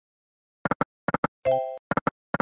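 Online video slot game sound effects from EGT's 100 Burning Hot: short clicking reel-stop sounds in quick clusters as the reels land, with a brief ringing chime about one and a half seconds in.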